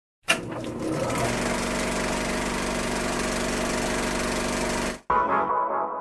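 Intro sound effect: a steady mechanical rattling buzz starts suddenly and runs about five seconds, then cuts off abruptly. A snatch of music follows, growing muffled as it fades out.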